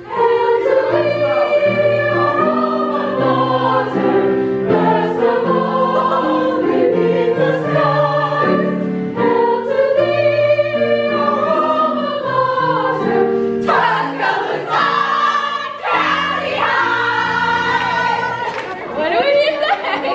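A mixed high school choir singing in several parts, with long held chords that shift every second or so. The singing turns brighter and busier about two-thirds of the way in.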